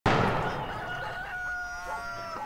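A single gunshot at the very start, dying away, then a rooster crowing one long call that begins under a second in.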